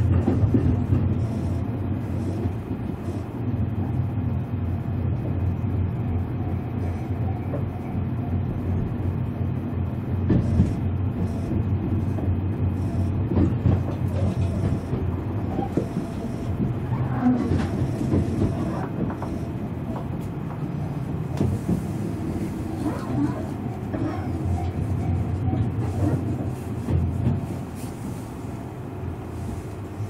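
Interior running noise of a Tobu 500 series Revaty electric train, heard from inside the passenger car: a steady low rumble from the wheels and rails. The noise gradually quietens over the last few seconds as the train slows for the station stop.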